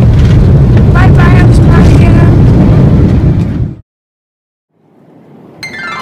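Loud, overloaded rumble of an airliner's engines heard from inside the cabin, cutting off abruptly just before four seconds in.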